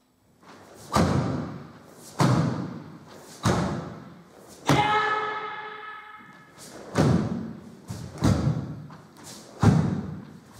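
Karate stepping punches (oi-zuki): four sharp, echoing thuds about a second apart as each step and punch lands, the fourth one with a long kiai shout. Three more thuds follow as the karateka steps back into upper blocks.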